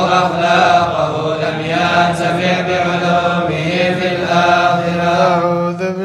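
Unaccompanied chanting of an Arabic devotional poem in slow, melismatic held notes, each line drawn out with gentle pitch glides and no instruments.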